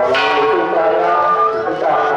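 A sharp metallic strike right at the start, ringing on with several steady tones over melodic music.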